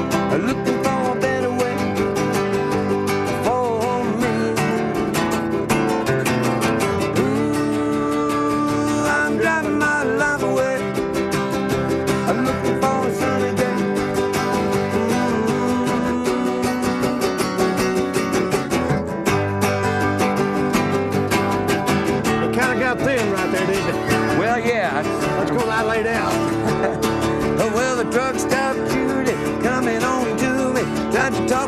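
Two acoustic guitars playing a country tune together, with many quick picked notes over chords.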